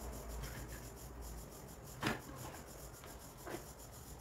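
Hands working electrical wire and a wire stripper on a wooden workbench: quiet rubbing, with a short sharp scrape about two seconds in and a smaller one near the end.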